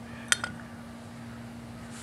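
A single light metallic click about a third of a second in, over a faint steady low hum.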